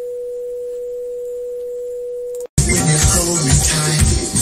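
A steady pure test tone from an oscillator, used to set the record level on a Sony TC-765 reel-to-reel tape deck, whose input and tape output levels match. The tone cuts off abruptly about two and a half seconds in, and after a brief silence music with a beat starts.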